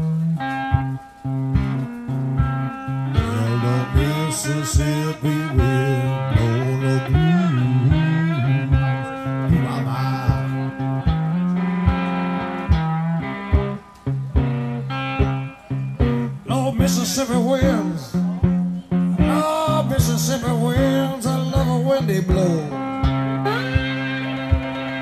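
Cigar box guitar playing an instrumental blues passage: a low droning note under melody notes that slide and bend in pitch, over a steady beat of sharp knocks.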